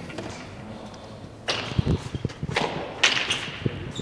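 A hand pelota ball slapped by a player's hand and cracking off the frontón's front wall and concrete floor: a run of sharp smacks beginning about a second and a half in, as a serve is played that lands past the line.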